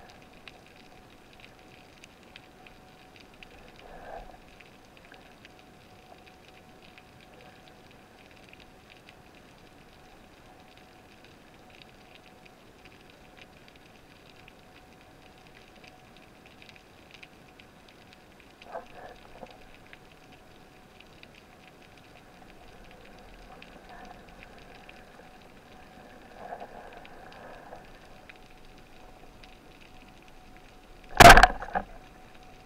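Faint underwater ambience: a steady crackle of tiny clicks over a faint steady hum, with a few soft bumps and rustles scattered through.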